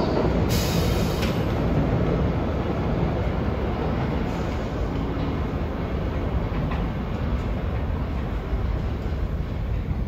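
Downtown local subway train pulling out of the station and running away down the tunnel, its rumble slowly fading. There is a brief high-pitched burst about half a second in.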